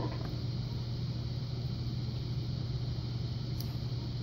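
A steady low hum over faint background noise, with one faint tick near the end.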